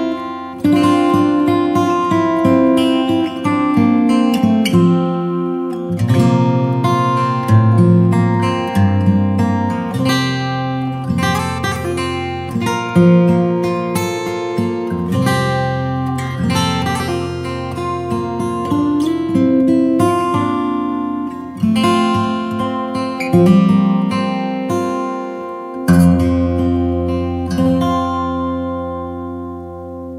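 Acoustic guitar music, a run of plucked notes and chords. Near the end a final chord is struck and left to ring, fading out.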